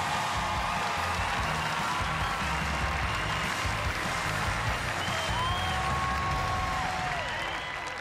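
Large arena audience applauding over music with a pulsing bass line and held notes.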